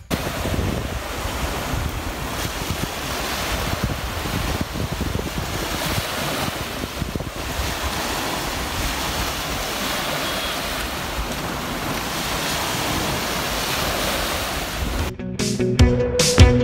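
Small waves washing onto a sandy beach as a steady noise, with wind buffeting the microphone. Music starts near the end.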